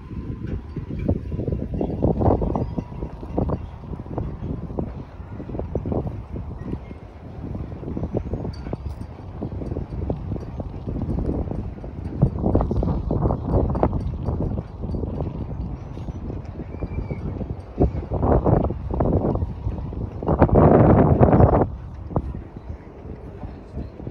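Wind buffeting a phone microphone outdoors: an uneven low rumble that surges and drops in gusts, with the strongest gust near the end.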